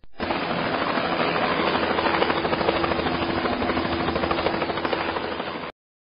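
Recorded helicopter sound: rotor blades chopping rapidly over a steady engine tone. It lasts about five and a half seconds and cuts off suddenly just before the end.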